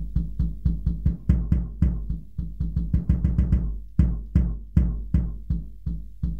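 A sampled jazz kick drum in Ableton's Sampler, played from a keyboard about three times a second in an uneven pattern, some hits in quick pairs and with varying strength. Velocity is mapped to pitch, so the harder hits sound slightly higher, for a more real drum feel.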